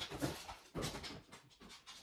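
Blue heeler puppy panting, a run of quick breaths that are louder in the first second and then fade.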